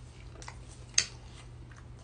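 A single sharp click about halfway through, with a fainter tick before it, over a steady low hum.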